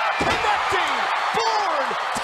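Excited shouted exclamations from a man's voice, with falling pitch, over a dense background of arena crowd noise.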